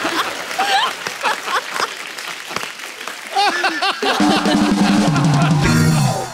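Studio audience clapping and laughing while a short burst of show music plays, with steady low notes near the end.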